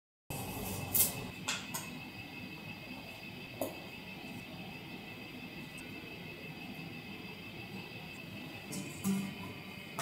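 Quiet room tone with a few short, light clicks and rustles, from a sheet of marker stickers being handled as the dots are peeled off and pressed onto a guitar neck. There are single clicks near the start and a few more near the end.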